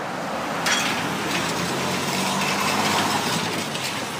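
Road traffic passing close by: tyre and engine noise swells about a second in and fades toward the end.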